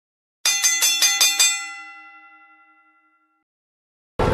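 A chime sound effect over dead silence: a quick run of bell strikes, about five a second, then a ring-out that fades away over about two seconds.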